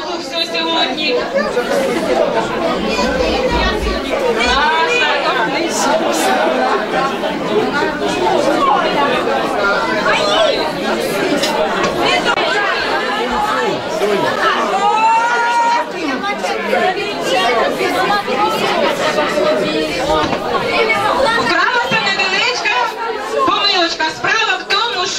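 Crowd of wedding guests chattering, many voices talking over one another at a steady level with no single voice standing out.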